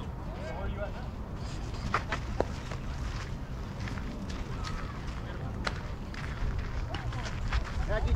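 Outdoor background of a steady low rumble of wind on the microphone, with faint distant voices and a few sharp clicks: two about two seconds in and one near six seconds.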